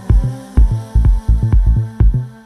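Deep tech house music from a DJ mix: a heavy four-on-the-floor kick drum at about two beats a second under a held bass note and sustained synth tones.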